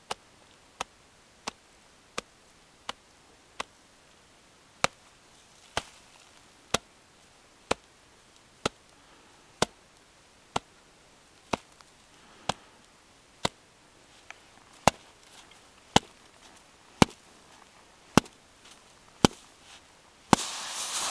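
Extended column test taps: a gloved hand striking an avalanche shovel blade laid on top of an isolated snow column, in three even sets. There are six light taps about 0.7 s apart (from the wrist), then ten louder taps about a second apart (from the elbow), then five louder still (from the shoulder). Each tap is a sharp slap, loading the column to see whether the buried depth hoar layer will fracture.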